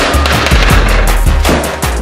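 Loud background music with a heavy bass and a fast, steady drum beat.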